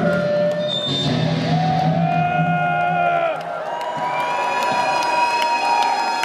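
Live metal band ending a song: the last chord rings out and the low end drops away about three seconds in. Electric guitar feedback then holds steady high tones over a cheering, whooping crowd.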